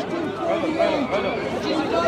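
Chatter of several people's voices in a standing crowd, talking over one another with no single clear speaker.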